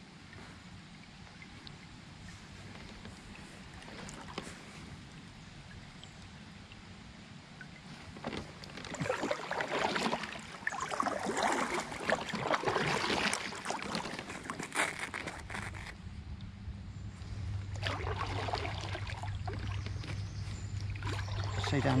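Kayak paddle strokes: water splashing and dripping off the paddle blade in spells, starting about eight seconds in after a quiet stretch of calm water. A low steady hum comes in for the last several seconds.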